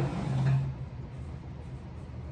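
Cloth being rubbed across the glass of a sliding patio door, a short, loud, low-pitched rubbing squeak in the first second, then only a steady low rumble.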